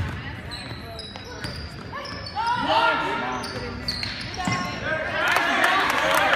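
Basketball game in a gym: the ball bouncing on the hardwood floor and sneakers squeaking as players move, with people shouting, loudest over the last second.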